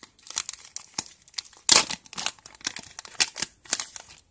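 Plastic and foil packets of nail foil crinkling and rustling as they are handled, in irregular sharp crackles with a longer, louder rustle a little under two seconds in.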